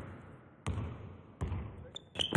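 A basketball bouncing twice, about three-quarters of a second apart, each bounce trailing off in a long echo.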